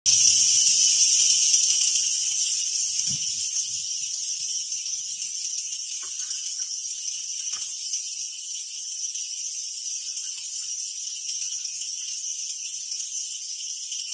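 A steady high-pitched hiss, loudest in the first couple of seconds and then easing a little, with a few faint soft knocks underneath.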